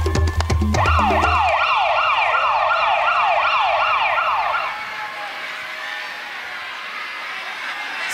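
Siren sound effect, a rapid run of falling wails at about three a second, cuts in about a second in as the dance music's beat stops. It signals the firemen coming on to punish the contestants. It fades out near five seconds, leaving a quieter hiss.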